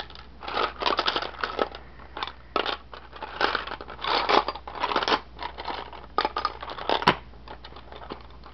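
Seashells in a plastic tub being rummaged through by hand, clattering and scraping against each other in irregular bursts, with one sharp click about seven seconds in.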